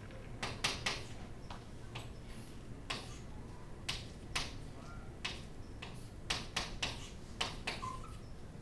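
Chalk on a chalkboard as structures are drawn: an irregular string of short, sharp taps and scratches, a few each second.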